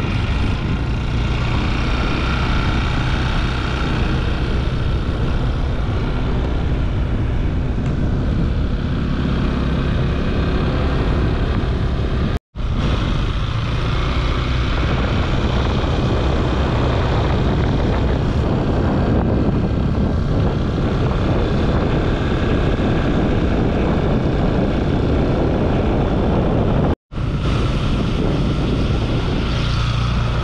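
Loud wind noise on the microphone over a motor scooter's engine, heard while riding along a road. The sound cuts off abruptly for a moment twice, about twelve and twenty-seven seconds in.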